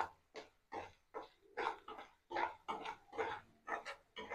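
Steel ladle scraping and stirring vegetables in oil in a kadai: a quick run of short scraping strokes, about two to three a second.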